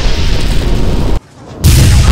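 Two loud energy-blast sound effects, each a dense rush of noise with a heavy low end that starts and cuts off abruptly: the first stops about a second in, the second begins near the end.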